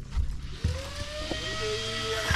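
An airplane passing overhead: its hum and rushing noise come in about half a second in, and the pitch holds and then slowly sinks. A few dull thumps sound underneath.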